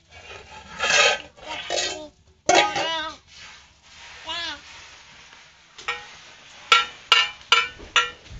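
Toddlers babbling and squealing, then a metal bowl struck about five times in the last two seconds, each clang ringing on briefly.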